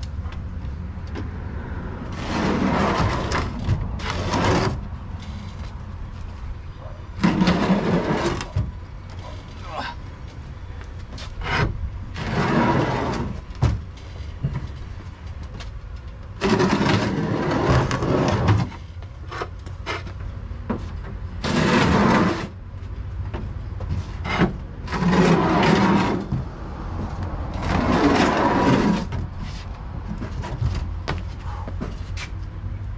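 Stacks of clay ridge tiles scraping and clattering as they are slid across and lifted off a pickup truck bed, about seven bursts of one to two seconds each, one every four seconds or so, over a steady low hum.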